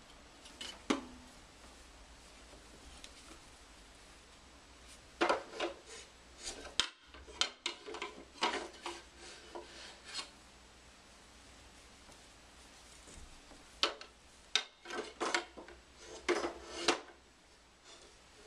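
Wooden slat side rails of a child's toy wagon knocking and scraping as they are handled: a single knock about a second in, then clusters of clattering knocks and rubbing from about five to ten seconds in, and again near the end.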